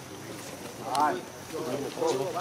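A voice giving a short exclamation, "ah", about halfway through, with more voice starting near the end, over a steady background hiss.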